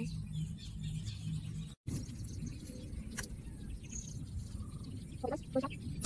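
Outdoor ambience: a steady low rumble, cut by a moment of dead silence just before two seconds in. A faint click comes about three seconds in, and a few short pitched calls sound near the end.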